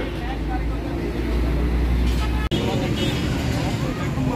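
Busy street ambience: a steady low traffic rumble under faint background voices. It breaks off abruptly about two and a half seconds in, and street noise and chatter carry on after the break.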